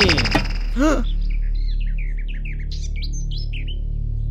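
Small birds chirping in a quick run of short, high, downward-sliding calls over a steady low hum, after a brief voice at the very start.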